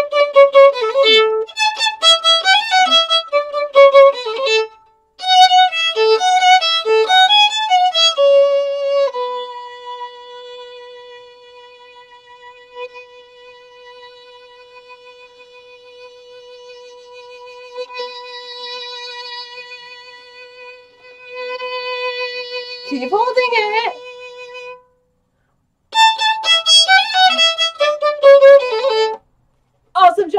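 Solo violin played with the bow: runs of quick short notes, then one long held note of about fifteen seconds that fades and then swells again, then quick notes again near the end.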